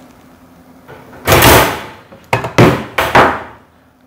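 Galvanized wire cage live trap tripped: its spring-loaded metal door snaps shut with one loud metallic clang about a second in, then several smaller clanks and rattles as the cage and door settle.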